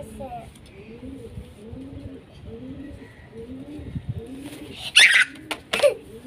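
Muffled, closed-mouth hums about twice a second from a person holding water in the mouth while being tickled and trying not to laugh, then a sudden loud sputter about five seconds in, and a shorter one near the end, as the laughter breaks out.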